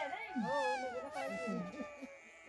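A voice singing a melody in long, gliding notes that bend up and down, with no spoken words.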